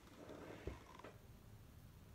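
Near silence: faint room hum, with one soft low thump about two-thirds of a second in.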